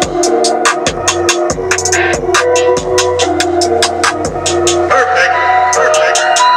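Electronic music with a steady beat and deep bass, played through a BMW's Harman Kardon sound system and heard inside the car's cabin. The deep bass drops out about five seconds in.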